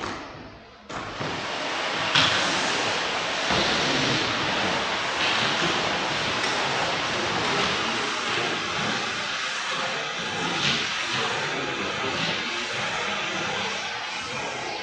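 A machine switches on abruptly about a second in and runs with a steady, loud rushing hiss.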